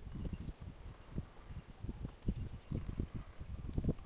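Irregular low rumbling and bumps on the microphone, the buffeting of wind and handling as the camera is moved around.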